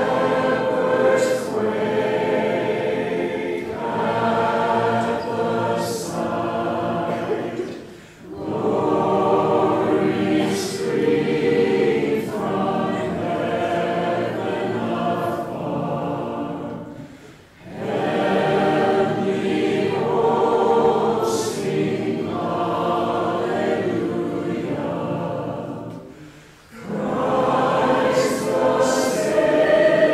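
A group of voices singing a hymn together in long phrases, each about nine seconds long, with brief breaks for breath between them.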